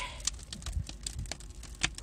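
Pine logs and pallet-skid wood burning in the open firebox of an outdoor wood-fired water boiler, crackling with irregular sharp pops, one louder pop near the end.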